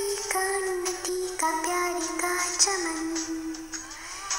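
Karaoke performance of a Hindi patriotic song: a young singer's voice holds long, drawn-out notes of the melody over the backing track.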